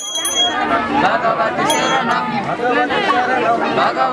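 Several voices talking at once, overlapping. A small hand bell rings rapidly and stops about half a second in, with one more short ring near the middle.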